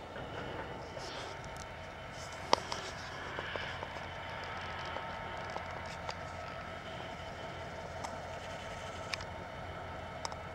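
Diesel-hauled freight train crossing a viaduct: a steady low rumble with a faint hum. A single sharp click comes about two and a half seconds in.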